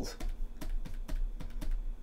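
Quick, irregular run of light clicks from a computer mouse or keyboard, about six a second, as a brush is dabbed repeatedly onto the canvas.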